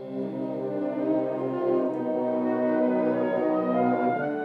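Wind orchestra of brass and woodwinds playing slow, held chords. The music swells in over the first second, and the chord changes near the end.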